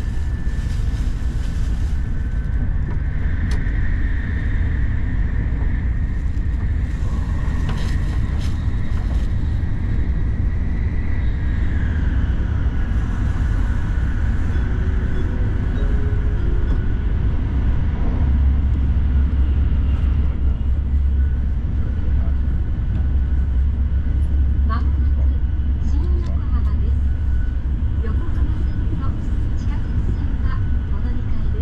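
Shinkansen bullet train running at speed, heard inside the passenger cabin: a steady low rumble with faint high whines above it, one of which drops in pitch about twelve seconds in.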